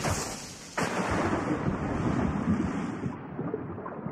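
A person plunging into water: a sudden splash, a second sharper splash under a second in, then churning, rushing water that turns muffled about three seconds in.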